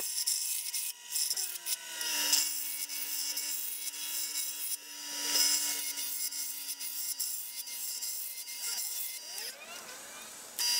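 Wood lathe rough-turning a square block of clear acrylic (Perspex): a hand-held turning tool scrapes and chips at the spinning corners. The cutting noise surges and fades unevenly over a steady thin whine, and dies away near the end.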